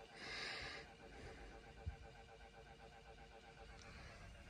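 Near silence inside a car cabin: a short breathy hiss in the first second, like an exhale, then only a faint steady hum with a single light click about two seconds in.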